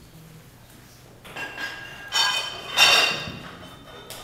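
Metallic clinks from a loaded Olympic barbell and its plates as the lifter grips and sets the bar before the lift. There is a faint clink about a second in, a sharp clink just after two seconds, and a louder ringing clank about three seconds in.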